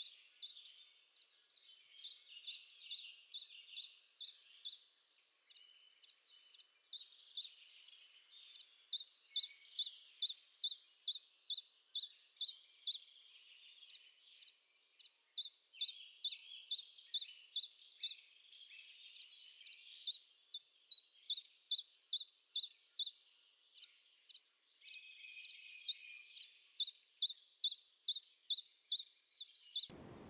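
Songbirds singing: one bird repeats a short, high note about four times a second in runs of several seconds, with fainter twittering from other birds behind it.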